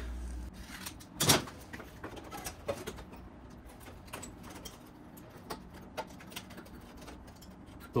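A paper template being handled and held against the car's bare sheet-metal body: light rustles and faint taps, with one sharp knock about a second in.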